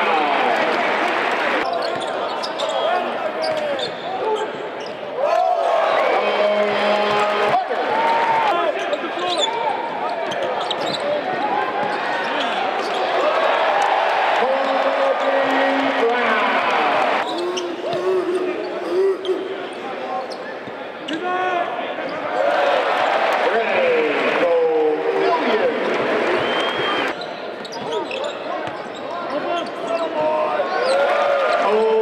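Live game sound: a basketball dribbled on the hardwood court, among the voices and calls of players and crowd in the arena.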